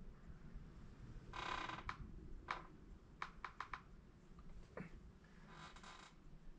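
Quiet handling of sculpting tools on oil-based clay: a brief scrape about a second and a half in, then a string of small clicks and taps, and a faint scrape near the end.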